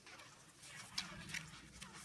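Cross-country skiing on a groomed snow track: skis sliding on the snow, with a few sharp clicks of ski poles planting about half a second apart.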